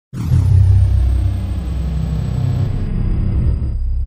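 Deep, steady low rumble of an intro sound effect, with a faint high whistle falling in pitch at the start; it cuts off suddenly at the end.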